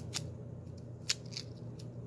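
Fingers rubbing and picking sticker adhesive off a plastic shampoo bottle: a few short, sharp scratches spread through the moment.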